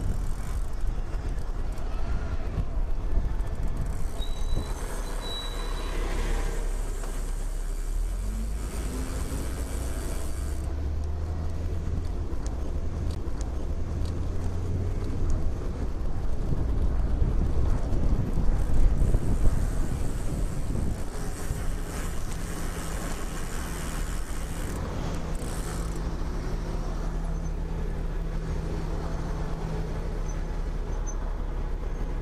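Road traffic with passing cars, then a bus's diesel engine running close behind. Its steady hum is loudest around the middle and holds on through the second half.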